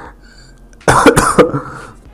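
A man coughing: a sudden, loud burst of a few quick coughs about a second in.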